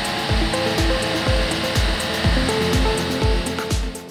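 Background music with a steady beat over a steady rushing hiss, the exhaust of a diesel engine held at raised revs, about 2500 rpm, while it blows out DPF cleaning vapour.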